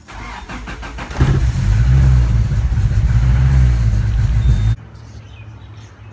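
A Honda B20 VTEC four-cylinder engine is cranked by the starter for about a second, catches and runs loudly and steadily, then cuts off suddenly near the end. It is started just after an oil change to circulate the fresh oil through the engine and the new filter.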